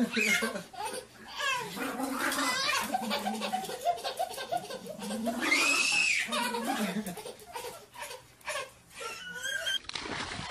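A baby laughing and giggling, with adult laughter alongside, and a loud high-pitched squeal about halfway through.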